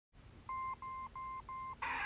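Four short electronic beeps at one steady pitch, evenly spaced about three a second, from an animated intro's soundtrack; music starts suddenly near the end.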